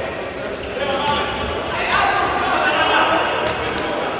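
Futsal match in a large sports hall: crowd voices and shouting that swell about halfway through as the attack goes toward goal, with the sharp knock of the ball being struck near the end.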